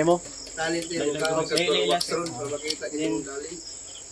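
Insects chirring in one continuous high-pitched band, under a soft voice talking.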